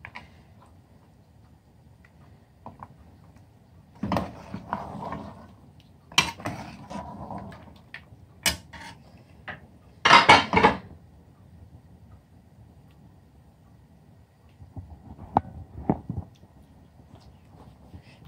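Steel ladle scraping and knocking against a metal cooking pot of mutton karahi while it is stirred, in scattered strokes with quiet pauses between; the loudest scrape comes about ten seconds in.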